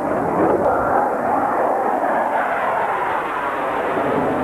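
Jet fighter flying past, its engine noise loud and continuous, with a slow downward sweep in the rushing sound as it passes.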